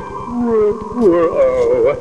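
A voice making wavering, gliding ghostly moans in two phrases, over a low rapid buzz.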